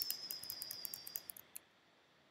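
A quick run of computer keyboard key clicks, tapped repeatedly, with a thin, steady, high-pitched whine underneath. Both stop about a second and a half in.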